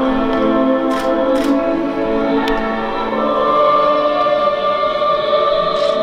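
Recorded soprano singing a classical vocal piece with accompaniment, played back through a hall's sound system, with long held notes.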